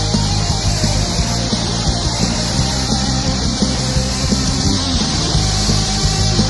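Loud rock band music with a steady drum beat.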